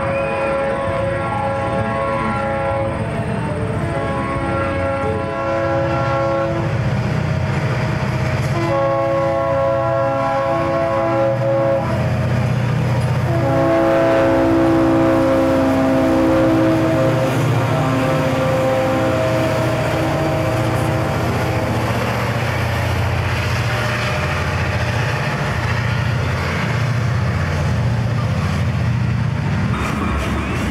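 C&NW SD40-2 diesel locomotives passing at speed, their air horn sounding four chords, the last held for about eight seconds, over the engines' steady rumble. Near the end the grain hopper cars roll by.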